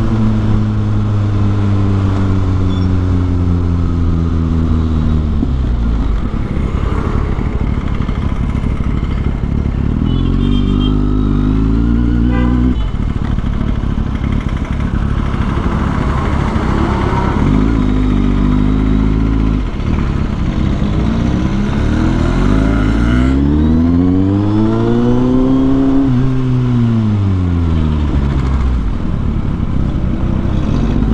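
Kawasaki Z800's inline-four engine through a Yoshimura slip-on exhaust while riding in slow town traffic. The revs drop away over the first few seconds, hold steady for a while, then climb and fall again near the end as the bike accelerates and rolls off.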